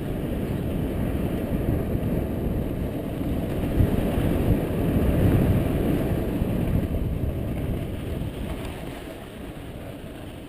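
Wind buffeting the camera microphone, mixed with mountain bike tyres rumbling over a dirt singletrack. The noise is loudest around the middle and eases off near the end.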